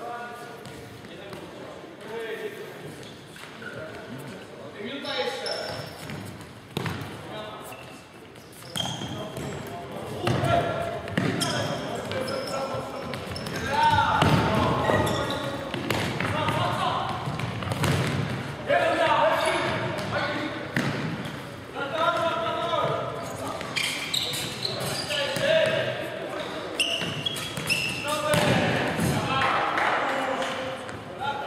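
Futsal play in a sports hall: players shouting and calling to each other, with the ball being kicked and bouncing on the wooden floor, all echoing in the hall. The voices get louder and busier from about ten seconds in.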